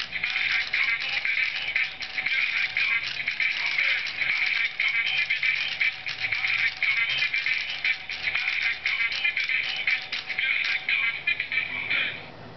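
Musical greeting card's sound chip playing a thin, tinny song with sung vocals through its tiny speaker, cutting off abruptly at the very end.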